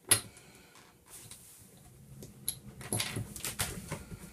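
A carpeted floor hatch being opened by hand. It starts with a sharp click as its pull is gripped, then a run of knocks and rattles as the panel is lifted.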